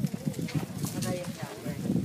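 Indistinct voices talking in the background, with soft, irregular low knocks.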